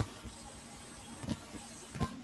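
Faint steady background hiss from an open call microphone, with a thin high whine and a few soft clicks.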